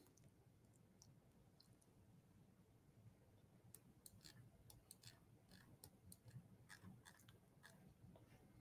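Near silence, with a scattering of faint, short clicks in the second half.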